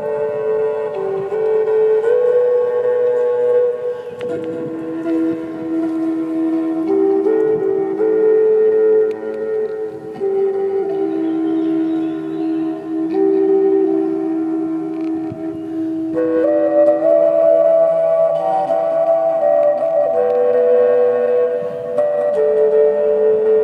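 Wooden Native American-style flute playing a slow melody of long held notes that step between a few pitches. It lingers on a low note through the middle and climbs higher about three-quarters of the way through.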